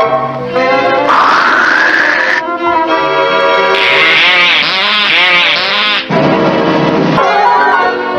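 Cartoon background music with sound effects over it: a rising whistle-like glide a little after a second in, then a hissing, warbling spray effect for about two seconds as milk sprays out of the bowl, cutting off suddenly.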